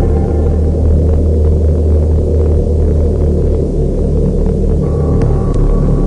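A loud, steady low rumble, the dark ambient drone of a film soundtrack. Faint held tones fade out just after the start, and a faint high tone comes back in near the end.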